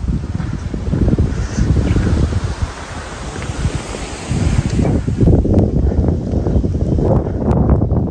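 Wind buffeting the microphone of a handheld phone: a loud, gusty low rumble that eases in the middle and surges again about four seconds in.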